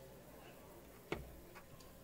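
Faint room tone with one sharp click a little past the middle, followed by a couple of fainter ticks.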